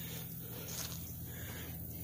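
Quiet outdoor background with a steady low hum and a faint rustle, with one small tick a little before the middle.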